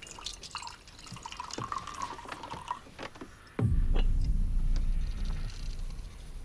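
Film sound effects: faint, irregular soft ticks and a thin ringing tone, then a sudden deep, loud rumble about three and a half seconds in. The ticking belongs to the locket Horcrux, which sounds as if it had a heartbeat.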